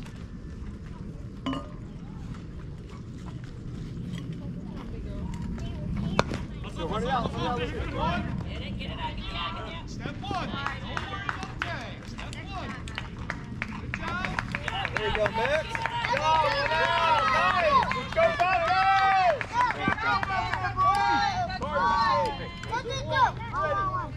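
Several voices shouting and cheering over one another, building from about six seconds in and loudest in the last third. A single sharp knock comes about six seconds in.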